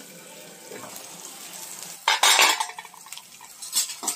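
Onions and chillies frying in oil in a black iron kadai, a faint sizzle. About two seconds in comes a loud clatter and scrape of metal on the pan, then a few lighter clinks near the end, as the uncovered pan is stirred.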